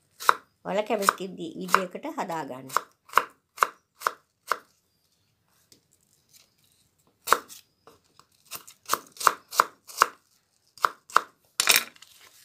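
Kitchen knife dicing apple on a cutting board: sharp chops as the blade goes through the fruit and strikes the board, in runs of about two a second, with a pause of a couple of seconds in the middle.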